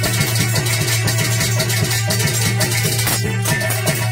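Instrumental accompaniment of a Dhola folk performance, with no singing: a fast, steady rhythm over a sustained low drone.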